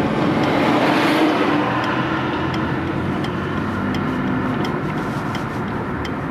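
Car driving along a city street: steady engine and road noise, swelling briefly about a second in.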